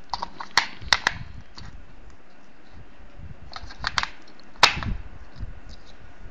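Sharp plastic clicks and knocks as AAA batteries are fitted into the battery compartment of a small plastic remote-control transmitter. The clicks come in two bunches, a quick run in the first second and another about four seconds in, ending in the loudest click.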